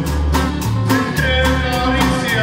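Live norteño band playing: button accordion melody over guitars, low bass notes and a drum kit keeping a steady beat of about four strokes a second.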